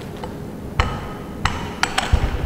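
Collapsible tripod stand being unfolded, its legs knocking and clicking as they swing open: a few sharp clacks, the first about a second in and two more close together near the end.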